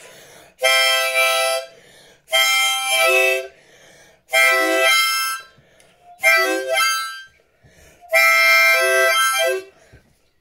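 Harmonica played in five short phrases of about a second each, with brief pauses between them; each phrase ends by stepping down to lower notes.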